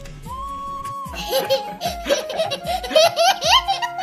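A toddler laughing hard in quick rising peals, starting about a second in, over background music with a steady held note.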